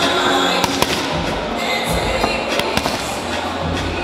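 Boxing gloves slapping into leather focus mitts: several sharp punches in quick, irregular combinations, over background music.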